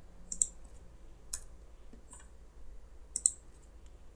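Four short, sharp clicks about a second apart from a computer keyboard and mouse while code is pasted into an editor, over a faint low hum.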